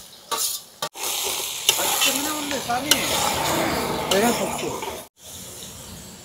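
Steady sizzling of food cooking in a metal pot, with a few light spoon clicks; it starts abruptly about a second in and cuts off about five seconds in.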